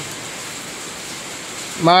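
A steady, even background hiss, with a man starting to speak near the end.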